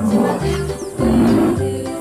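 Two rough, growling animal calls, a short one at the start and a longer, louder one about a second in, laid over cheerful background music as the rhinoceros's call.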